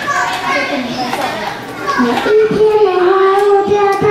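Young children's voices talking over one another, then from about halfway in a child's voice holding one long drawn-out note.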